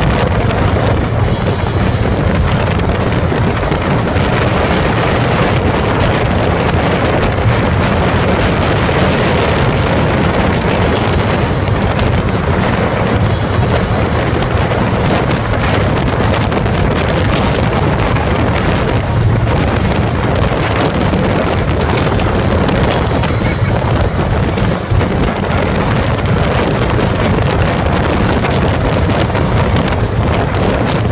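Loud, steady noise of a high-speed open-deck thrill-ride boat underway: engine drone mixed with rushing wind and water.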